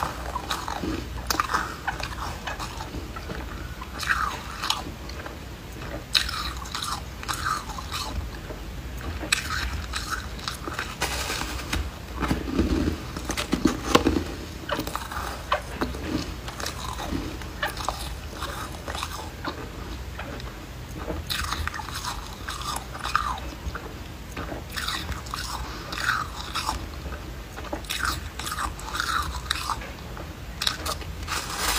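Foam ice being bitten and chewed: repeated bursts of crunching and crackling as chunks are bitten off and broken up in the mouth, with short pauses between bites and the loudest crunches about halfway through.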